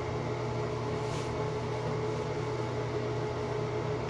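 Steady hum of a room ventilation fan, with a faint brief rustle about a second in as the curly wig is pulled on.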